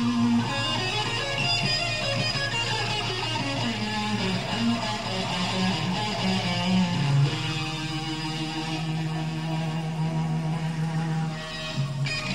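Electric guitar solo played loud through an amplifier. A run of notes slides downward, then one long note is held for about four seconds near the end.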